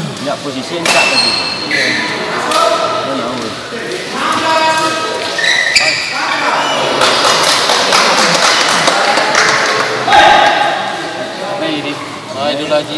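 Badminton doubles rally: rackets strike the shuttlecock in a series of sharp smacks, with players and spectators shouting over it, the shouting loudest just after ten seconds in.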